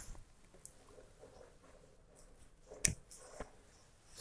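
Faint handling noise, then a sharp click about three seconds in, with a softer one just after, as a DC barrel plug is pushed into the power jack of a Cyclone II EP2C5 mini FPGA dev board to restore its 5 V supply.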